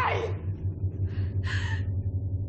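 A woman's scream trailing off with a falling pitch, then two short, sharp breaths about a second and a second and a half in, over a steady low hum.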